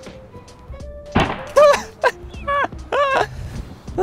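A bicycle helmet struck once against a stone block: a single hard thunk about a second in, over background music with a repeating melodic phrase.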